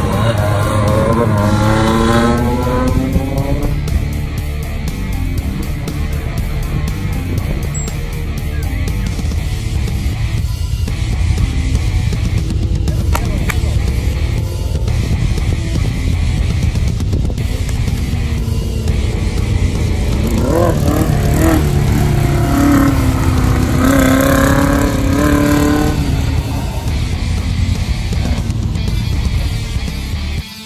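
Off-road race buggy engine at full throttle passing by, its pitch falling away over the first few seconds. A second pass about twenty seconds in rises in pitch and then holds, over background music.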